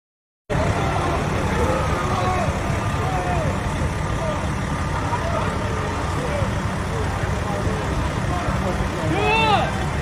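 People talking and calling out over a heavy, steady low rumble, starting abruptly after half a second of silence; one loud shout comes near the end.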